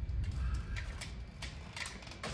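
A few light clicks and taps at irregular spacing over a low steady rumble.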